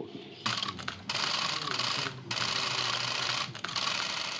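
Many press camera shutters clicking rapidly and overlapping at a handshake photo op, with faint voices beneath. The clicking starts about half a second in and drops out briefly a little past two seconds.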